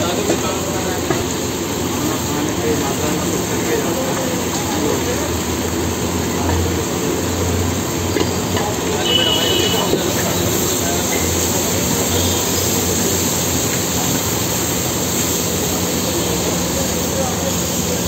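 Chole (chickpeas with onions and tomatoes) sizzling on a large hot tawa, a steady hiss under background voices.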